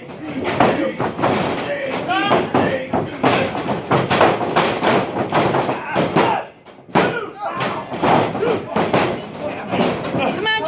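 Crowd voices and shouting at ringside, broken by thuds of wrestlers' bodies hitting the wrestling ring mat. A sharp, heavy slam comes about seven seconds in, just after a brief lull.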